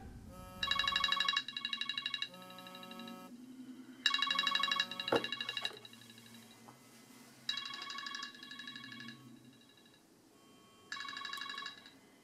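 Smartphone alarm ringtone going off in repeated bursts of fast-pulsing high beeps, starting about every three and a half seconds: a wake-up alarm. A single sharp click sounds about five seconds in.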